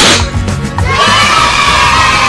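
A confetti-cannon pop sound effect, then about a second in a cartoon sound effect of children cheering and shouting, over a backing music track.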